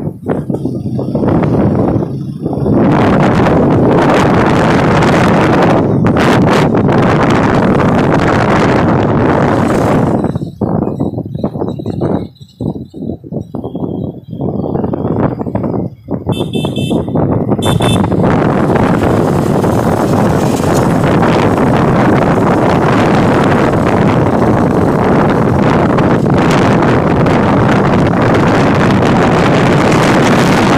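Wind buffeting the phone's microphone and road noise from a moving motorcycle, loud and steady, easing off for a few seconds around the middle. A short horn beeping sounds a little past halfway.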